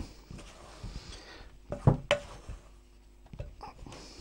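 Spoon stirring flour and milk into a stiff dough in a bowl: soft scraping, with a couple of sharp knocks of the spoon against the bowl about two seconds in.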